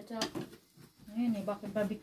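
Speech, with a hummed "mmm" of a voice near the end.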